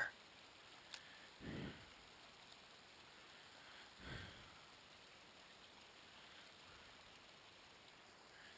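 Near silence: a faint steady hiss, with a tiny click about a second in and two soft, short puffs, one at about a second and a half and one at about four seconds.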